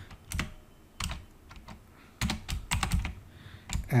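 Typing on a computer keyboard: scattered single keystrokes, with a quick run of several keys a little past the middle.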